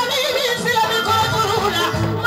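Live music: a woman singing a wavering, heavily ornamented melodic line with vibrato, over instrumental accompaniment.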